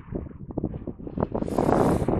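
Wind buffeting the microphone in uneven gusts, growing stronger about one and a half seconds in.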